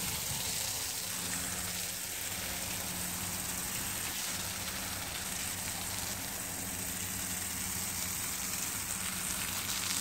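A jet of water from a hose spraying onto a wet rug, a steady hiss, with a faint steady low hum underneath.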